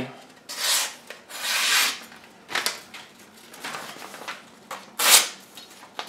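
Sheet of paper being sliced by a Condor barong machete's edge in push cuts, with the paper rustling: several short rasping hisses, the longest about a second and a half in, another near the end. The clean cuts along the mid-blade show the edge is sharp from the factory.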